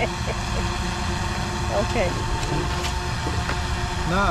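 A steady low rumble with faint voices talking briefly about halfway through.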